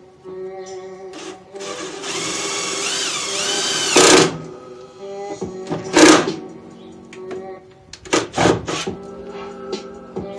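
A power drill running for about two and a half seconds, its whine rising in pitch near the end, then several short bursts: drilling holes into the car's engine-bay sheet metal to mount an oil catch can with self-tapping screws. Background music plays underneath throughout.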